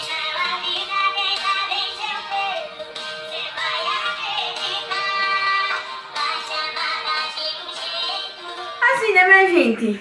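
Sertanejo song playing, sung by a male vocal duo with a band, the sound thin with little above the upper treble.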